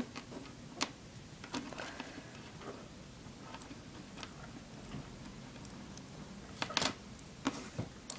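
Faint scattered clicks of plastic pony beads being handled as stretchy jewelry cord is pulled through them, with a louder pair of clicks near the end.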